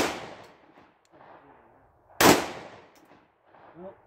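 Two 9mm pistol shots from a PSA Dagger compact (a Glock 19 Gen 3 clone) firing Federal Range 115-grain full metal jacket rounds. The first comes right at the start and the second about two seconds later, each fading out over about a second.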